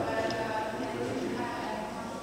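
Speech, fairly quiet: a person talking, not picked up as words by the recogniser.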